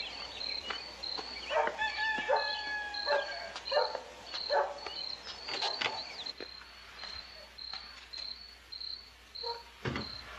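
Night-time ambience of a cricket chirping steadily, about two short high chirps a second. A few brief, higher-pitched calls from other animals sound in the first few seconds.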